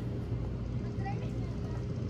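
Outdoor background: a steady low hum over a soft even noise, with a faint short pitched call, like a distant voice, about a second in.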